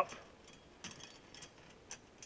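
A few faint, scattered metallic clicks from a wire mesh Duke cage trap being handled as its door is raised.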